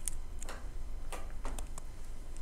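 Stylus tip tapping and scratching on a tablet screen while handwriting, a handful of light clicks at irregular spacing.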